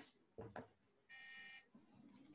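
A short, faint electronic beep: one steady tone lasting about half a second, just past the middle, after a couple of soft clicks.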